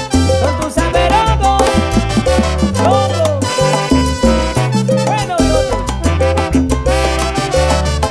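A live salsa orchestra playing an instrumental passage: a brass section of trumpets, trombones and saxophone over piano, bass and Latin percussion (timbales, bongos, congas) in a steady salsa rhythm.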